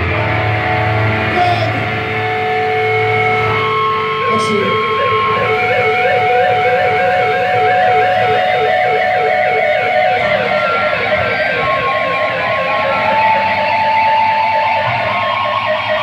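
Live band's electric guitars holding sustained notes that waver in a steady repeating ripple, with no drums.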